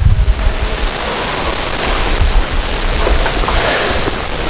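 Wind buffeting the microphone: a loud, steady rushing noise with an uneven low rumble underneath.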